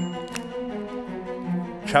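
Background music with sustained low string-like notes, and a single short click about a third of a second in.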